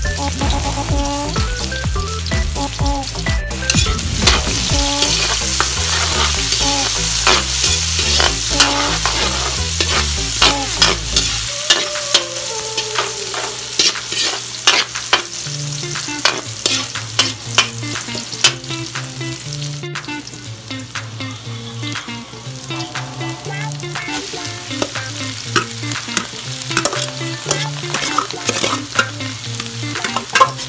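Onion, ginger and garlic sizzling in hot oil in a wok while being stirred, with frequent short clicks and scrapes of the utensil against the pan.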